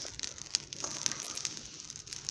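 Faint crackling and crinkling: scattered small clicks, irregular and sparse.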